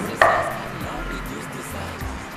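A single sharp knock, a short hit with a brief ringing tail, about a quarter of a second in, followed by a low steady background.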